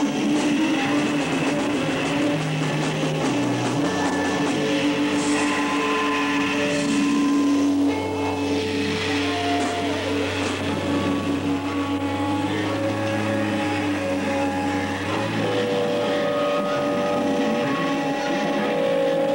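Live noise-rock band playing a droning passage: long held guitar and bass notes, changing pitch every few seconds, over a loud noisy wash with no clear steady beat.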